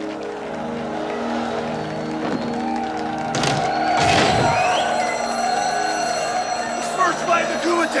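Film soundtrack music with steady held chords. About halfway through comes a loud hit, followed by a lingering metallic ringing. Near the end men start shouting and cheering.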